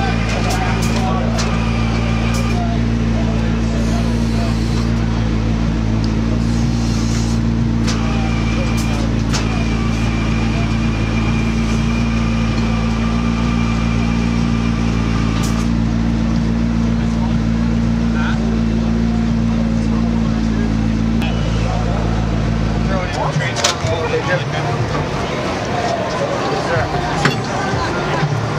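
A vehicle engine idling steadily with an even low hum, then shutting off abruptly about 23 seconds in. A few short clicks sound over it.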